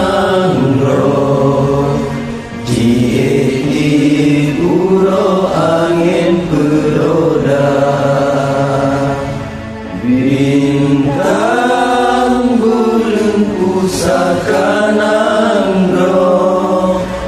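Acehnese song with chanted vocals over music: long held sung notes that bend in pitch, with two brief lulls between phrases, about two and ten seconds in.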